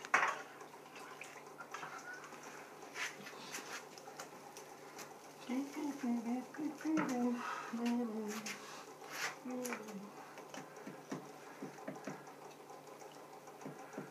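Sharp knock at the very start, then scattered clicks and knocks of hand tools being worked on a wooden table, with low, indistinct talking in the middle.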